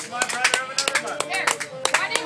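Scattered hand clapping from a small audience, uneven claps several times a second, with voices talking over it.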